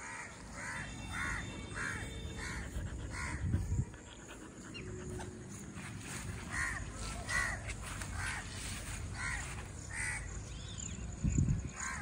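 A bird calling over and over, about two calls a second, in one run over the first four seconds and another from about six to ten seconds, over a low outdoor rumble.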